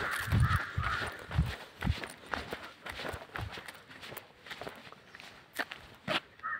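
Footsteps of a person walking on a paved road, about two steps a second, growing fainter in the last couple of seconds, with a crow cawing in the first second.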